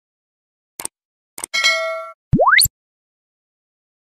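Channel logo sound effects: two short clicks, then a bright metallic ding that rings for about half a second, then a quick sweep rising from low to very high pitch.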